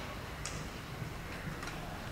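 A pause between spoken sentences: low room hum with a few faint, sharp clicks.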